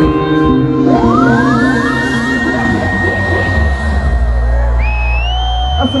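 Live reggae-rock band playing the close of a song: a siren-like effect sweeps up in pitch again and again and settles on a held high tone, then rises to a second, higher held tone, over a long sustained bass note.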